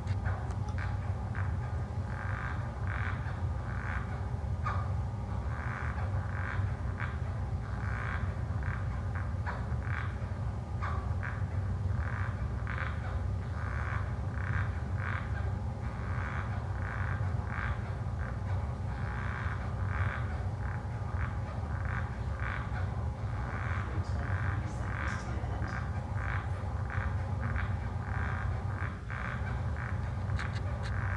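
Recorded rhinoceros beetle stridulation played back over loudspeakers: a long string of short, irregular chirping pulses, several a second, over a steady low hum.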